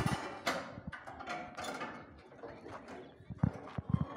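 Steel reinforcing bars (rebar) clanking and clinking against each other and the container's steel floor as they are handled, a string of sharp knocks with short metallic ringing.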